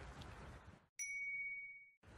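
Faint outdoor background noise cuts off, and about a second in a single bright ding sounds. It is one clear high tone that rings and slowly fades, like a chime sound effect added at an edit.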